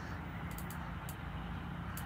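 Steady low hum of outdoor background noise, with a few faint ticks.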